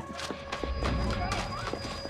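Footstep-like clicks and knocks at uneven spacing over a low rumble that comes in about half a second in, with faint voices in the background.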